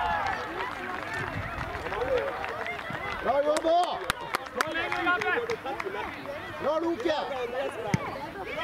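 Voices calling out across a football pitch, several overlapping and indistinct, with a short run of sharp knocks about halfway through.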